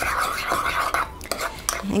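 Metal spoon stirring mayonnaise and lemon juice in a small ceramic bowl, a soft, wet scraping, followed by a few light clicks of the spoon in the second half.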